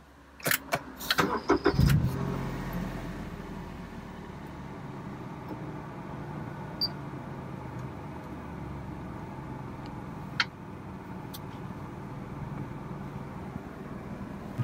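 A car engine is started with a push-button start: a short burst of clicks and starter cranking, the engine catching about two seconds in, then idling steadily.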